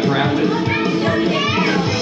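Karaoke backing track during an instrumental break, with guitar and a steady beat, and people's voices calling out over it.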